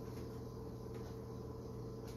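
Quiet kitchen room tone with a faint steady hum.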